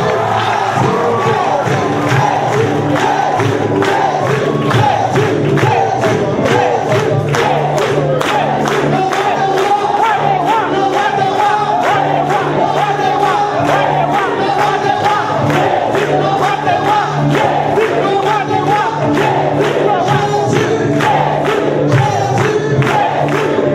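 A church congregation singing a worship song together with live music, over a steady beat of about two strokes a second.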